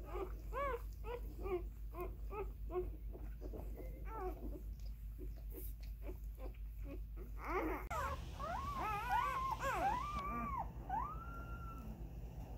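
Newborn husky mix puppies whimpering and squeaking: a run of short rising-and-falling cries about two a second, then from about eight seconds in several puppies crying at once in longer, wavering calls.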